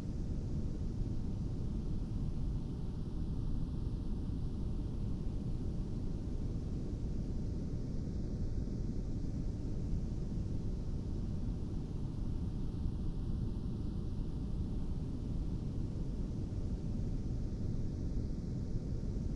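Monroe Institute Hemi-Sync meditation soundtrack: a steady low rushing noise with a few faint held tones, its upper hiss swelling and ebbing slowly about every five seconds.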